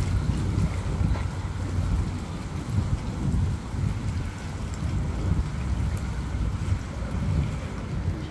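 Wind buffeting the microphone: a steady low rumble that swells and dips.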